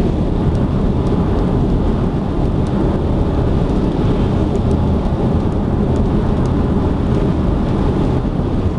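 Steady, loud low rumble of tyre and engine noise inside a car's cabin at expressway speed, with a few faint ticks over it.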